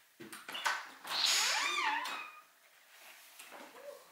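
A door being unlatched with a few clicks, then creaking for about a second as it swings open.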